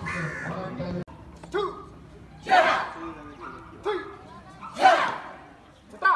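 Crowd chatter, then about a second in, a taekwondo team shouting kihap together as they perform a form. Two loud group shouts come about two and a half seconds apart, each just after a shorter single call.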